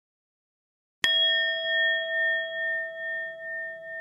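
A single bell-like ding sound effect about a second in, ringing on as a clear chime that slowly fades with a regular wavering pulse. It is the notification-bell chime of a subscribe animation.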